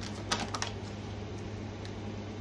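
Tarot or oracle cards being handled as a card is drawn: a quick cluster of light clicks and snaps about half a second in, over a steady low hum.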